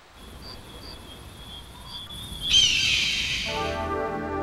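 Outdoor ambience with a thin steady high tone and a few short high chirps. About two and a half seconds in comes a loud scream from a bird of prey, falling in pitch. Music comes in near the end.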